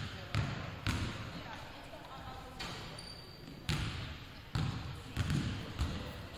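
Basketballs bouncing on a hardwood gym floor: about six irregular bounces, two early on and four in the second half, each with a short echo in the hall.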